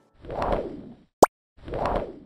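Animation sound effects: a whoosh, then a short, sharp rising pop about a second in, then a second whoosh.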